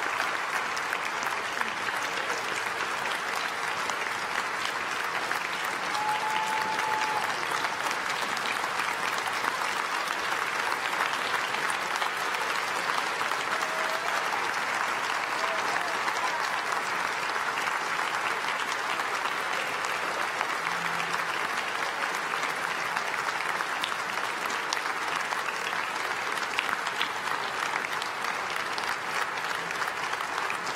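Large crowd applauding steadily, a dense, even clatter of many hands clapping that holds at the same level without a break.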